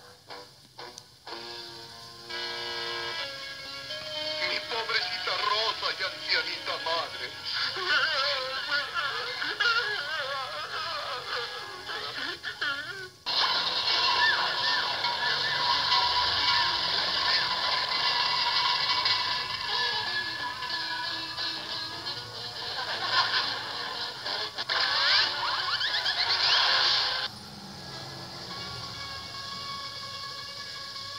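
Animated-cartoon soundtrack: music with vocal noises and sound effects. About 13 seconds in it switches abruptly to a louder, dense passage, which cuts off about 27 seconds in and gives way to quieter music.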